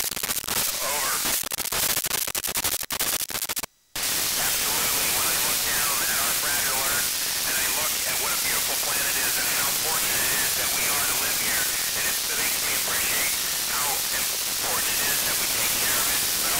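Narrow-FM receiver static from the ISS voice downlink on 145.800 MHz with the signal weak: for the first few seconds the squelch chops it in rapid dropouts, cutting out completely for a moment about four seconds in, then steady hiss with a faint, garbled voice underneath.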